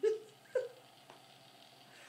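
Two short, high-pitched vocal sounds, one right at the start and another about half a second later.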